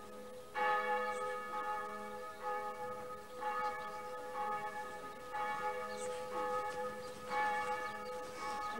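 Church bell tolling: struck repeatedly, roughly every one to two seconds, with each stroke ringing on into the next.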